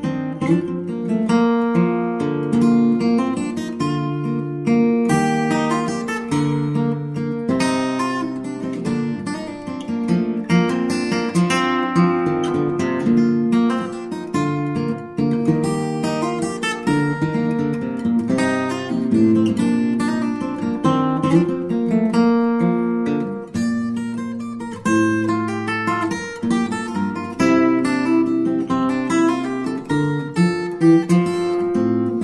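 Acoustic guitar music: a continuous run of plucked notes and strummed chords.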